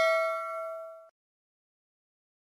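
Bright bell-ding sound effect of a subscribe-button notification bell, struck just before and ringing out with several steady tones, fading until it cuts off about a second in.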